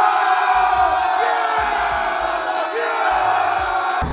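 Stadium crowd cheering and roaring from a TV football broadcast, many voices at once, sounding thin with no bass.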